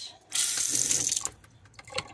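Water from a new high-arch pull-down kitchen faucet running into a stainless steel sink, turned on shortly in and shut off again about a second later.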